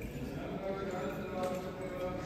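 Indistinct voices of people talking in the church, with a few light clacks, such as footsteps on the stone floor.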